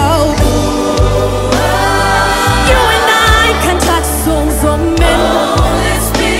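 Live gospel worship song: a lead singer with backing vocalists singing sustained, drawn-out notes over a full band with a steady bass.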